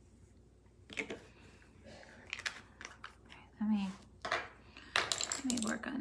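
A woman's voice muttering and half-whispering softly, with a few light clicks and taps in between.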